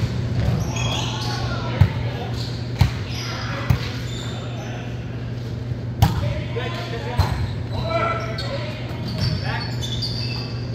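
Volleyball being played in a gymnasium: about five sharp smacks of the ball, a second or two apart, echoing in the large hall, with players' voices calling out and a steady low hum underneath.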